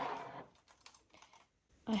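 A clear plastic storage bin sliding out of a shelf, then a few faint, light plastic clicks as it is handled.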